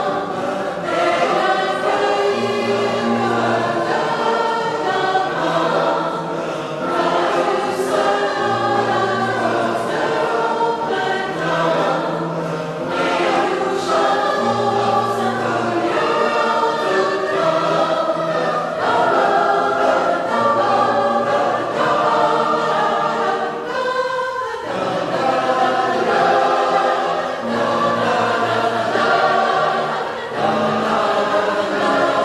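A mixed choir singing a piece with held low notes under the upper voices, with a brief pause between phrases late on.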